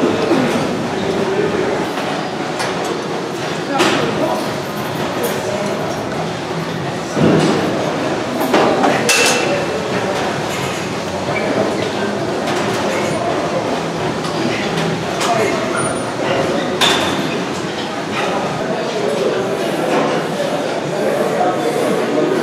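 Busy gym room sound: indistinct voices throughout, with a few sharp metallic clinks of weights being set down or knocked together, the loudest at around 7 and 17 seconds in.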